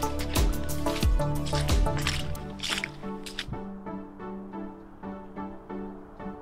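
Background music with a steady melody, over footsteps squelching through wet mud, about two a second, for the first half or so; after that only the music.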